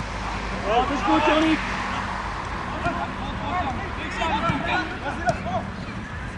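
Voices calling out across a football pitch during play: short shouted calls about a second in and again later, over a steady background hum. A short knock comes near the end.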